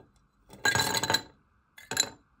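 Ice cubes dropping into a ribbed glass tumbler, clinking against the glass and each other. There is a quick rattle of clinks about half a second in, lasting under a second, then a shorter clink near the end.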